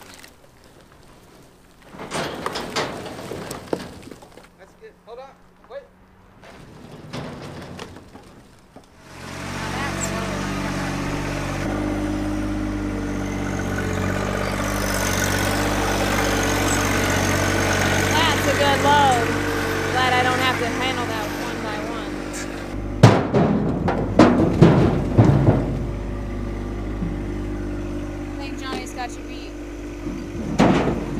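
John Deere 1025R sub-compact tractor's three-cylinder diesel running steadily from about nine seconds in while it carries logs in its grapple, with a burst of loud clunks and knocks about three quarters of the way through. Before the engine comes in there are only a few quieter knocks.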